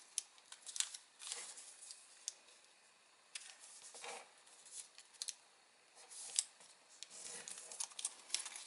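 Faint sheet of origami paper being folded and creased by hand on a tabletop: soft rustles and short crisp ticks as fingers press the folds flat, coming and going in small bursts.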